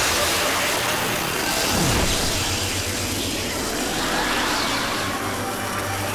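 Loud sci-fi sound effect of a being dissolving into light and being sucked into a meteor stone: a dense rushing whoosh, with a tone sweeping down about two seconds in and swooping tones rising and falling near the end.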